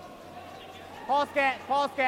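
Curler shouting sweeping calls to the sweepers: four short, loud shouts in quick succession, starting about a second in.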